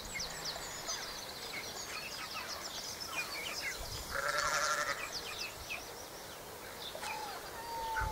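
Rural ambience of small birds chirping, with a sheep bleating once about four seconds in and a short call near the end.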